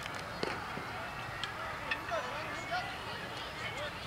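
A pitched baseball smacking once into the catcher's mitt about half a second in, followed by players and spectators calling out and shouting across the field.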